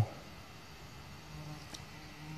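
A flying insect buzzing faintly near the microphone: a low, steady hum that grows stronger in the second half.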